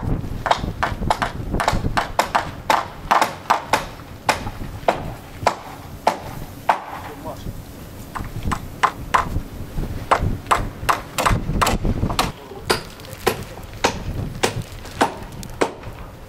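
Sharp knocks and clacks in a quick, irregular series, several a second, with a low rumble underneath at the start and again near the end.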